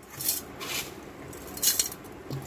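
A stainless-steel mixer-grinder jar scraping across a steel plate as it scoops up dry, crumbly mango-sugar powder, with the grains rattling into the jar. It comes as three short rasps, the last the loudest.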